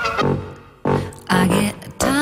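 Sparse music: a few short pitched notes or sampled snippets with silent gaps between them, played from a keyboard controller.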